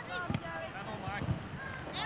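Faint, distant voices: players and spectators calling out across an outdoor football pitch.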